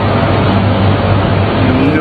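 Loud, steady street traffic noise: a continuous rush of engines and road sound with a low rumble.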